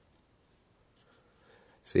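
Felt-tip marker drawing on paper: a few faint, short scratchy strokes about a second in and again shortly before the end.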